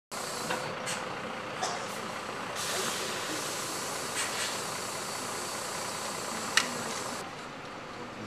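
Coach bus standing with a steady running noise, and a hiss of air from its pneumatic system that starts about two and a half seconds in and cuts off suddenly about seven seconds in. A few sharp clicks, the loudest a little after six and a half seconds.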